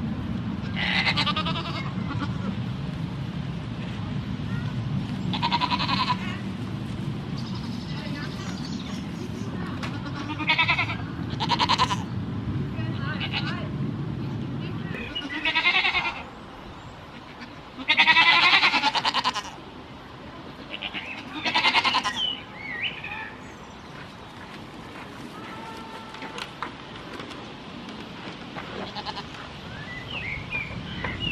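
Goats bleating on and off: about eight separate quavering bleats, the loudest and longest a little past halfway. A steady low rumble runs under the first half and cuts off about halfway through.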